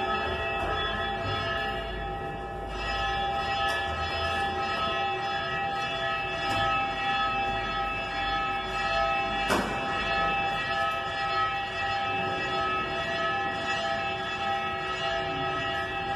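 Church bells rung by hand from ropes, several tones ringing on together, with fresh strikes now and then. The ringing announces that the church doors are open.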